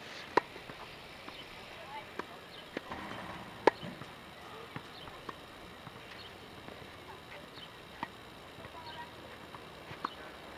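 Tennis balls being struck by rackets and bouncing on a hard court during a rally: sharp, irregular pops a second or more apart, the loudest about half a second in and again near four seconds.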